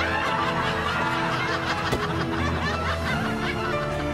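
Background music with a laugh track of people snickering and chuckling over it.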